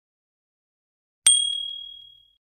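Notification-bell ding sound effect: a click followed by a single bright chime, struck about a second in and ringing down over most of a second.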